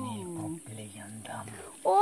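Quiet, low talking that no words can be made out of; no other sound stands out.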